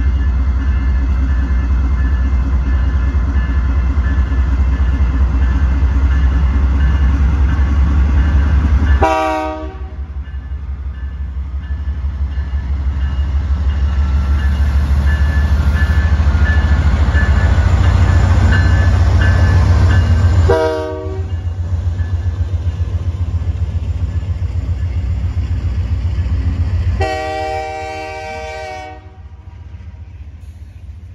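Two Canadian Pacific AC44CWM diesel locomotives pulling a welded-rail train pass close by, their engines running with a heavy low rumble. The air horn sounds three times: a short blast about nine seconds in, another short blast around twenty seconds in, and a longer blast of about two seconds near the end. The loud engine sound then gives way to the quieter rolling of the rail cars.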